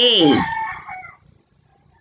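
A single drawn-out call about a second long, starting high and falling steeply in pitch, then trailing off.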